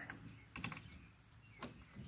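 Light clicks and taps of a strap's hook being fitted onto a plastic milk crate: a quick cluster of clicks about half a second in, then a single click a second later.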